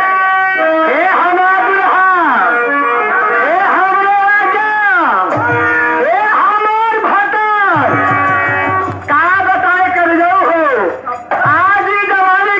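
Live nautanki folk-theatre music: a performer's voice in long, swooping sung lines over held harmonium notes, with a quick rhythmic clicking of percussion joining in about eight seconds in.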